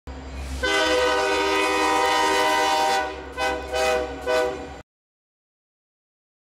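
Diesel locomotive air horn sounding one long blast followed by three short blasts over a low engine rumble. The sound cuts off suddenly about five seconds in.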